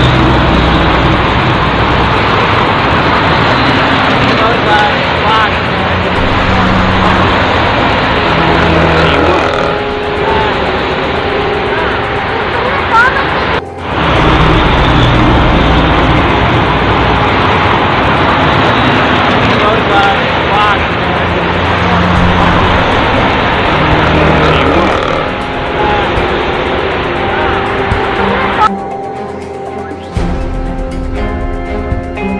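Loud, continuous road traffic with vehicles passing close by, among them a truck, with indistinct voices underneath.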